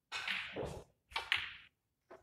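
Snooker shot: the cue striking the cue ball and the balls clicking together, heard as two clusters of sharp knocks, the second about a second in.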